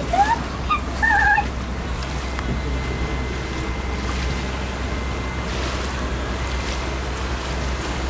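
Riverboat on the move: a steady low engine drone under the rush of water and wind on the open deck. A few short, high-pitched vocal sounds in the first second and a half are the loudest part.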